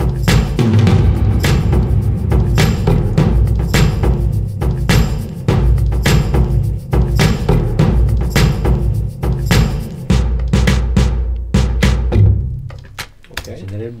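Mix playback of a pop track's drum and percussion part: a steady beat of sharp hits over a heavy low-end pulse, cutting off about twelve seconds in.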